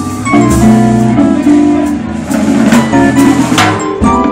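A live jazz band playing: guitars, a drum kit and a keyboard, with held chords and cymbal crashes near the end.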